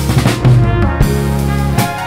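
Live band playing a loud passage: drum-kit hits with kick and snare over sustained chords from a Sequential Prophet synthesizer, with electric bass and trumpet and trombone.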